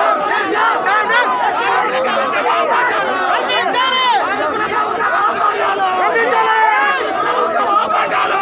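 Large crowd of men shouting over one another, loud and unbroken, as protesters jostle with police.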